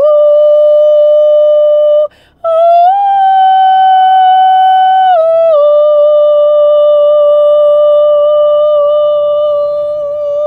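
A woman singing long held wordless notes: one steady note, a short break about two seconds in, then a higher note held for about two seconds that slides back down to the first pitch and is held for the rest.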